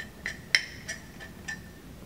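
A stirring utensil clinking against the inside of a ceramic mug, about five light clinks with the sharpest about half a second in, as dry flour-and-seasoning mix is stirred together.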